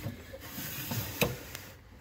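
A stainless steel bowl of meat being pushed onto a refrigerator shelf: quiet scraping and handling noise, with a short knock a little after a second in.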